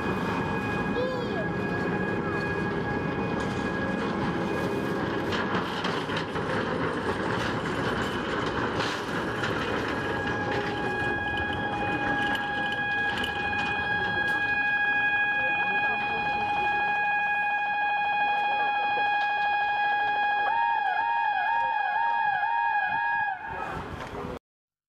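A railway depot traverser (transfer table) carrying a railcar sideways, its drive machinery running with a steady rumble under a continuous warning tone. Near the end the tone turns into a fast repeated warble, about two wobbles a second.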